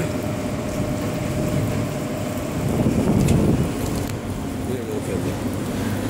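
Steady street-market ambience: background noise with the voices of people nearby, one voice coming up louder about three seconds in.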